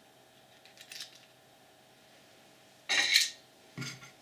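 Small plastic parts of the GigaPan button pusher being handled: faint clicks about a second in, then one louder, brief clatter about three seconds in.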